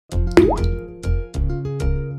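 Short upbeat intro jingle with a steady beat of low drum thumps under held notes. About half a second in, a quick rising 'bloop' sound effect sweeps upward.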